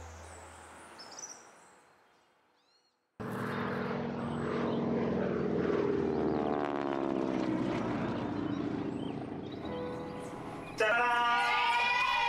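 A propeller airplane droning overhead, its pitch falling as it passes. It comes in suddenly after a short silence, following the fading end of a music sting, and a louder burst of music with a voice cuts in near the end.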